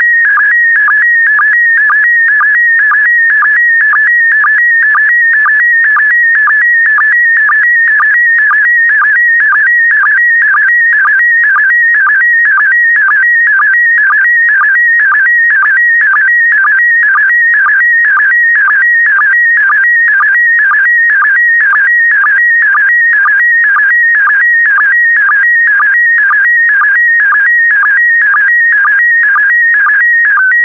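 Slow-scan television (SSTV) signal in PD120 mode, sending a still image line by line: a loud warbling electronic whistle whose pattern repeats about twice a second, once for each pair of scan lines.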